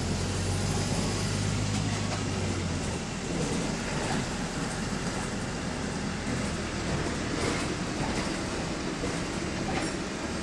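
Cabin noise on the upper deck of a Volvo B5LH hybrid double-decker bus in motion: a steady rumble of drive and road with rattles from the fittings. A low hum drops out about three seconds in.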